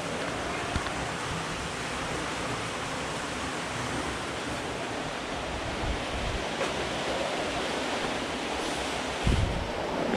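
Steady rush of water from the spring stream flowing through the cave, with a low thump about nine seconds in.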